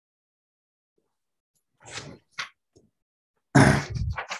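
A man's short noisy breath about two seconds in, then a rough throat-clear near the end.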